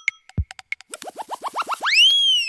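Cartoon sound effects of an animated TV bumper: a few quick pops, a short falling drop, then a run of short rising boings climbing higher and faster, ending in a loud upward swoop.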